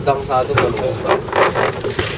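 Men's voices and exclamations over the steady hum of an idling Suzuki outboard motor.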